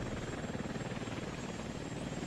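V-22 Osprey tiltrotor in flight, its proprotors giving a fairly quiet, rapid, even beat over a steady rushing drone.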